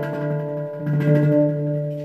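Handpan played by hand: a few soft strokes, about one a second, with the notes left ringing and overlapping, a sparser stretch between busier rhythmic playing.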